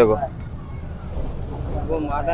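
A man's voice briefly at the start and again near the end, with a steady low background rumble between.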